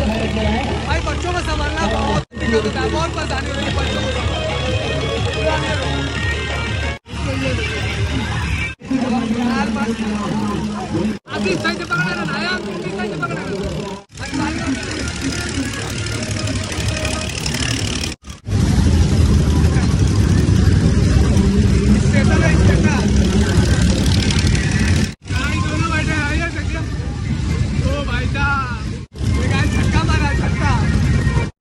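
Busy fairground din of crowd voices and music, cut into short clips with abrupt breaks. A heavy low rumble takes over for several seconds about two-thirds of the way through.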